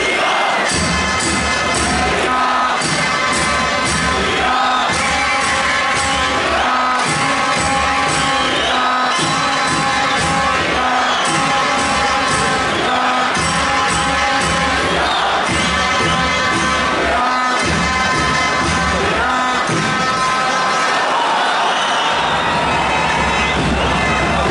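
Arena crowd cheering and chanting together with music, a steady, unbroken din.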